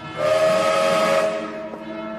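Steam locomotive whistle blowing with a hiss of steam: it starts suddenly, holds loud for about a second, then fades away.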